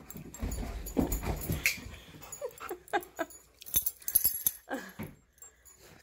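Excited dogs, a malamute and a husky, whining and whimpering in several short cries, with thumping and scuffling as they move about. The whining comes from their excitement before going out.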